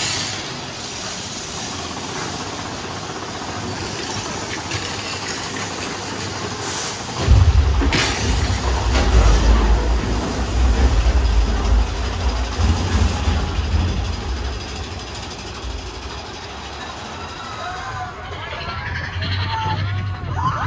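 Mine-train roller coaster running through a tunnel, its cars rattling on the track. About seven seconds in, a deep rumble starts and lasts about seven seconds. Near the end, riders' voices shout as the train comes out.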